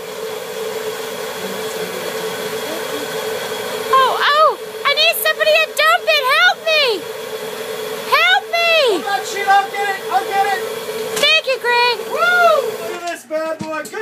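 A steady machine hum from the self-stirring kettle corn kettle, with a person humming or singing a wordless, swooping tune over it from about four seconds in. The hum stops shortly before the end, and a few sharp clicks follow.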